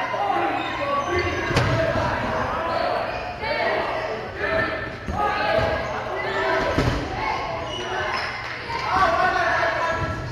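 Dodgeballs bouncing and smacking on a hardwood gym floor, with two sharp hits, one about one and a half seconds in and one near seven seconds, in the echo of a large hall.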